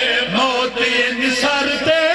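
A man chanting a melodic recitation in a sung, wavering voice with long held notes, in the style of a zakir's masaib elegy.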